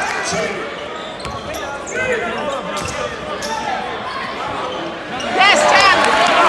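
Basketball game sounds in a gym: a ball dribbled on the hardwood court, sneakers squeaking, and crowd voices echoing in the hall. The squeaks and noise grow louder near the end.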